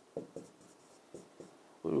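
Marker pen writing on a board: a few short, scratchy strokes. A man's voice starts again near the end.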